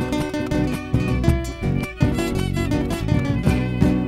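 Live band playing an instrumental break between sung verses: a nylon-string classical guitar and an electric bass over a steady beat.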